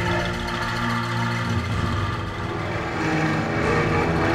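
Background music: sustained low chords that shift a couple of times.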